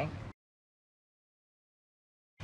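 The last moment of a spoken line, then dead digital silence: a blank gap between repeated dialogue clips.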